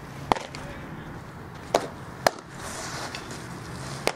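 Sharp pops of a softball smacking into leather gloves, three in all: one about a third of a second in, then two close together around the two-second mark.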